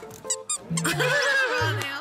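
A toddler's squeaky shoes, with squeakers in the soles, squeak a few quick times at the start under background music. A child's high voice sounds through the middle.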